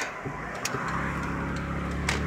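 Car engine and road noise heard inside the moving car's cabin, with a steady low engine hum coming up a little under a second in.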